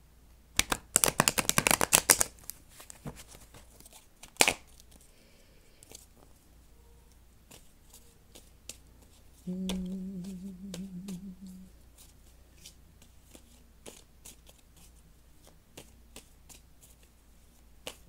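A deck of tarot cards being riffle-shuffled: a fast run of card clicks about a second in, a single sharp snap of the cards a couple of seconds later, then light scattered taps as cards are handled. A short low hum from a voice comes about halfway through.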